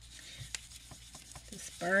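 A few light, sharp clicks and taps of small craft tools being handled on a tabletop.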